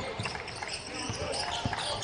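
Basketball being dribbled on a hardwood court, several bounces about half a second apart, over the general murmur of an arena.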